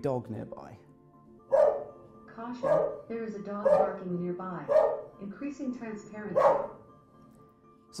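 A dog barking from a video played on a tablet, five barks about a second apart, used to trigger a sound-recognition system's dog-bark alert. Quiet background music runs underneath.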